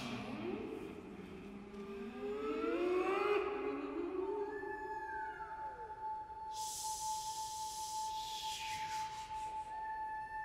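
Choir voices sliding slowly upward in overlapping glissandi, then settling into one high note held steady, with a higher note above it briefly bending down. Later a breathy hiss sweeps downward beneath and around the held note.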